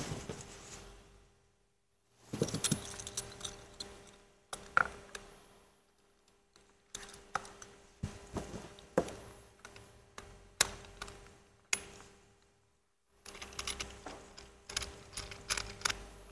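Stainless sanitary clamp fittings being handled and fastened, joining a hose end to a hand nozzle: light metallic clicks, taps and knocks in irregular clusters with short quiet gaps between them.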